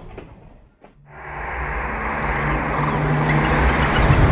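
Passenger train rumbling through a rock tunnel, a rushing noise with a low steady hum that grows gradually louder from about a second in.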